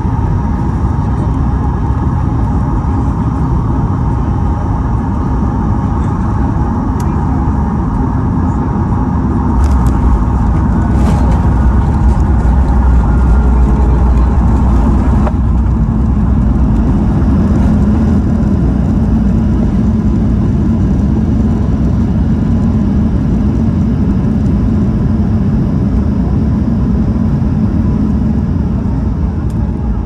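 Cabin noise over the wing of a Boeing 737-8 MAX landing: the steady roar of its CFM LEAP-1B engines and airflow, with a few rattles and clicks around touchdown about ten seconds in. The roar then grows louder for about five seconds as the jet slows, and settles into a steady rumble of the runway rollout.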